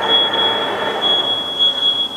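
Aftermarket electric power-tailgate actuators on a Hyundai Creta running as they lift the boot lid: a steady motor whine with a thin high-pitched tone above it.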